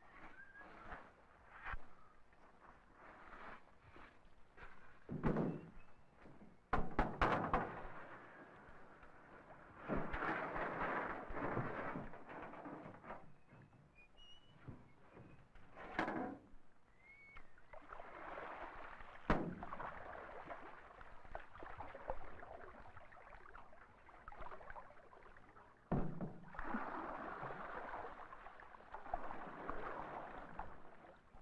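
An aluminium canoe being launched and paddled on still water: several hollow knocks on the metal hull, between stretches of paddle strokes splashing and dripping.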